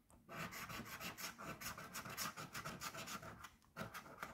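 A coin scraping the coating off a lottery scratch-off ticket in quick back-and-forth strokes, several a second, starting about a quarter second in with a short pause near the end.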